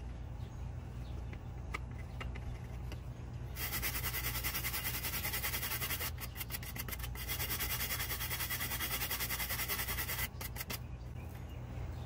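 Hand scrubbing of a truck PCM's J3 edge-connector pins with a wooden-handled cleaning tool, working silicone and grime off the contacts. After a few faint clicks, a rapid back-and-forth rasping sets in about four seconds in, pauses briefly near the middle, and stops about two seconds before the end.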